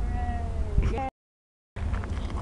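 Wind rumbling on the microphone under a high, drawn-out voice sound that falls slightly in pitch, then a short spoken word; the audio then cuts out to dead silence for about half a second before the wind rumble returns.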